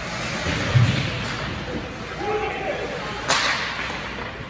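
Sharp crack of a hockey puck being struck about three seconds in, over the rink's steady noise of skates and voices. A dull thump comes just under a second in.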